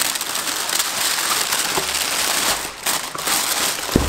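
Tissue paper crinkling and rustling steadily as it is pulled open and lifted out of a cardboard box, easing off briefly about three seconds in.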